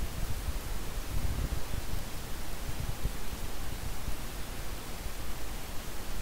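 Steady hiss of room tone with a faint, uneven low rumble, and no distinct events.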